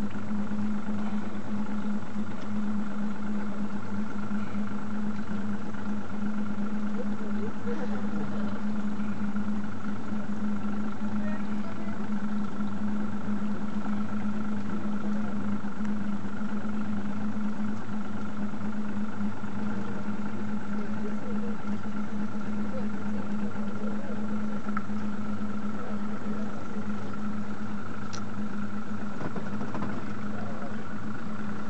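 Boat engine idling with a steady low hum that does not change in pitch or level throughout.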